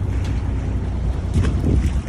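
Wind buffets the microphone over the low, steady rumble of a lobster boat's engine. A brief splash about three-quarters of the way through is the small lobster being tossed back into the sea.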